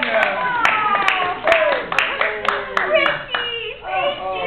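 A small group of people clapping by hand, sparse claps about twice a second that thin out near the end, with voices calling out over them.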